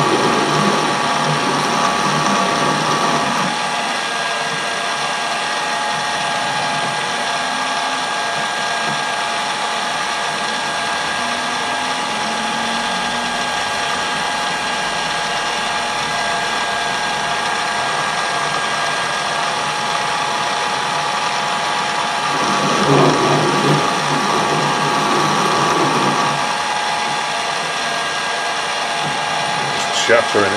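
Colchester Bantam metal lathe running under power feed while screw cutting, its gear train whining steadily. Two louder, rougher stretches, one at the start and one about three-quarters through, come as the threading tool cuts into very hard steel.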